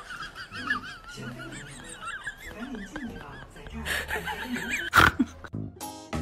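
High, wavering animal cries repeating, with a sharp knock about five seconds in.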